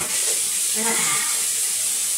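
Shower running: a steady spray of water falling in the tub. A brief voiced sound from the person showering comes about a second in.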